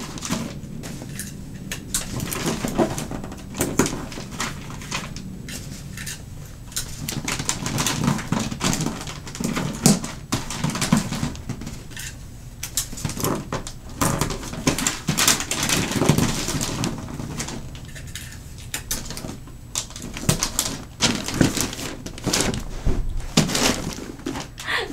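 Wrapping paper crinkling and rustling as it is creased and folded over the end of a box, in many irregular crackles and light taps.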